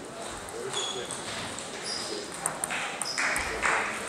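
Table tennis balls clicking off tables and bats across a busy sports hall: a few scattered high pings, over a background of voices. Near the end come a few short, louder rushing noises.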